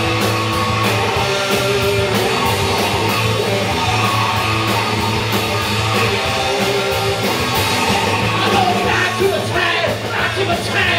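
Live rock band playing loudly, with electric guitar over a steady drum beat; a singer's voice comes in near the end.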